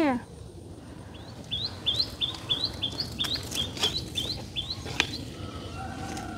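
A small bird chirping a quick series of short rising notes, about three a second, for several seconds, with a few sharp clicks mixed in.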